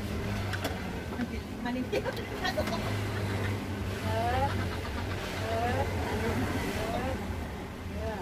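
A motor engine running, its low hum louder in the middle, under voices and a few light clicks.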